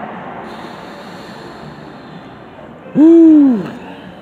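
A man's short hooting hum, rising then falling in pitch, lasting under a second about three seconds in, over a steady background hiss.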